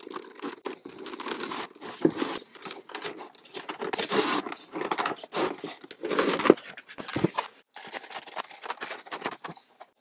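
Cardboard and clear plastic toy packaging being handled and opened by hand: irregular rustling, scraping and crinkling with a few sharp clicks.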